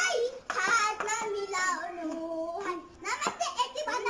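Young girls' voices singing and calling out together in high pitch, with one long held note in the middle.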